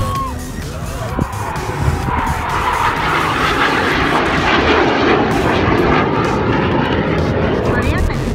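Formation of display jets flying past, a rushing roar that grows louder over the first few seconds and then holds, with spectators' voices underneath.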